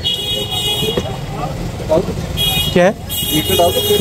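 A high, steady horn tone sounds three times: about a second long at the start, a short blast, then about another second near the end. A steady low rumble of street traffic runs beneath it.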